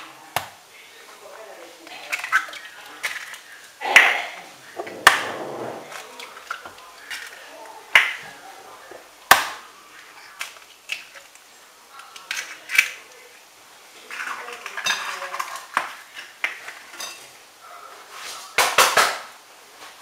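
Four eggs cracked one by one against a stainless steel pot and dropped in, with sharp knocks of eggshell on metal several times across the stretch and light handling clatter between them.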